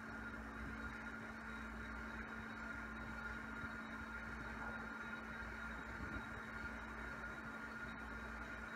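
Quiet room tone: a steady hum with a faint background hiss.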